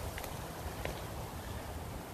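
Wind buffeting the microphone outdoors, a gusty low rumble over a faint hiss, with two faint ticks.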